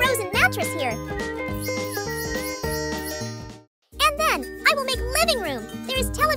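Cheerful background music with chiming, bell-like notes and a high voice. It cuts out briefly a little after halfway, then carries on.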